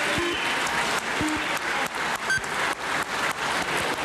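A chamber full of deputies applauding: dense, steady clapping from a large crowd.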